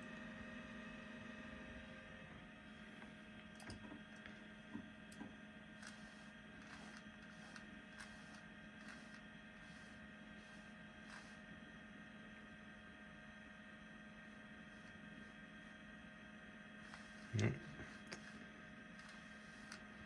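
Faint steady hum of a running Apple Macintosh SE, with a few soft clicks in the first half as the mouse opens menus on screen.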